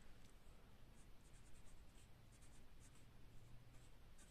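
Faint scratching of a felt-tip marker writing on a white surface, a quick series of short strokes.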